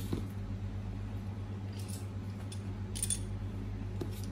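A few light clicks and taps of small parts being handled, the sharpest about three seconds in, over a steady low hum.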